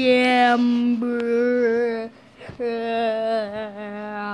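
A voice singing long, wordless, held notes with a slight waver: one long phrase, a short break about two seconds in, then another.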